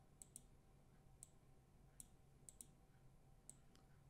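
Faint computer mouse clicks, several spread across the few seconds and some in quick pairs, over near-silent room tone.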